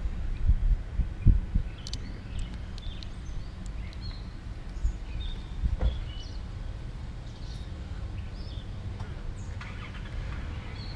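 A few soft knocks as a small figurine is handled and set down on a cloth-covered table, over a steady low outdoor rumble. Scattered faint bird chirps come in the middle.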